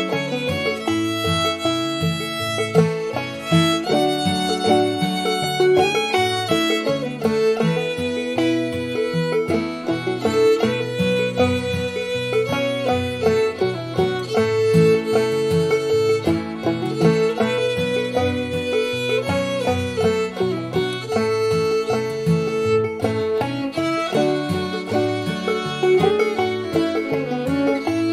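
Old-time fiddle tune played on fiddle, acoustic guitar and banjo. The bowed fiddle carries the melody over strummed guitar and picked banjo.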